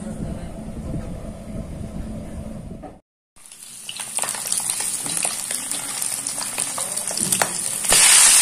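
A low steady hum for about three seconds, then after a brief break, hilsa (ilish) fish steaks frying in hot oil in a pan: a steady sizzle with scattered crackles and pops, growing louder toward the end.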